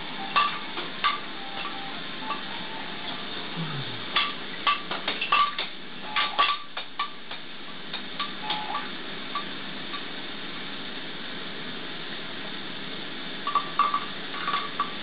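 Plastic baby toys on a bouncer clicking and clacking as the baby handles and bats them: irregular light ticks, busiest about four to seven seconds in and again near the end, over a steady hiss.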